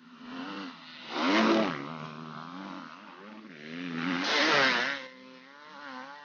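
Dirt bike engine revving on a trail, its pitch rising and falling with the throttle. It is loudest twice, about a second and a half in and again about four and a half seconds in.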